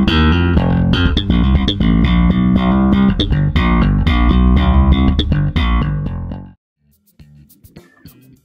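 Electric bass guitar played with the fingers, a fast funky line of many short plucked notes, its tone shaped by a compressor pedal with the direct signal and the amp microphone mixed together. It stops suddenly about six and a half seconds in, leaving only faint sounds.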